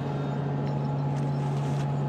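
Steady whir of the International Space Station's cabin ventilation, with a low, even hum running through it.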